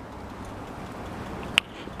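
Steady low background noise with a single sharp click about one and a half seconds in.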